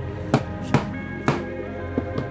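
Three sharp strikes of a plastic mallet on a stitching chisel, punching stitching holes through leather, over background music.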